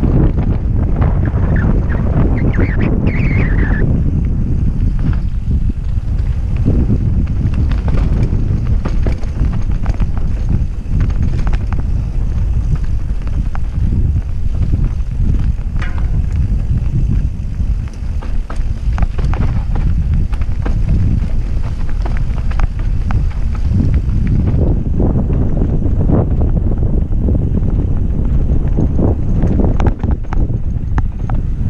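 Wind rumbling on the microphone of a rider-worn camera during a mountain bike descent on a dirt trail, with the bike's frequent clatter and knocks over bumps and roots.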